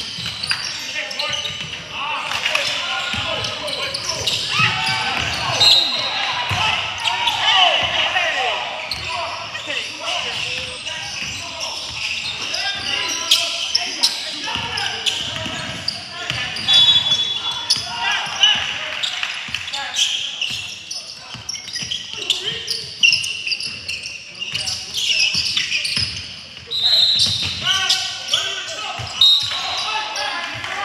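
Indoor basketball game in a gym: the ball bouncing on the court and sneakers squeaking a few times, over indistinct players' and spectators' voices echoing in the large hall.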